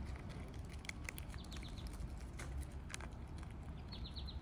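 Chipmunk gnawing and handling a peanut in the shell: scattered small clicks and crackles, with a quick run of ticks a little over a second in and another at the end.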